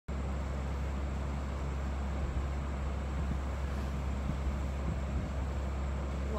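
Steady low background hum with a faint even hiss, unbroken and unchanging.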